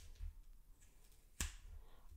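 Large steel scissors snipping through wool yarn wound on a cardboard pompom template, with one sharp snip about one and a half seconds in.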